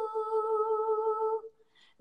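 A woman's unaccompanied voice holding one long, steady note at the end of a sung phrase. The note stops about a second and a half in.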